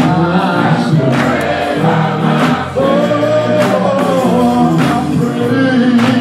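Men's gospel choir singing with instrumental accompaniment over a steady beat.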